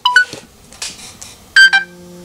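Insta360 Ace Pro action camera beeping as its record button is pressed: a short two-note rising chirp at the start, then a louder beep about one and a half seconds in that runs into a lower steady tone. The beeps signal the camera stopping its recording.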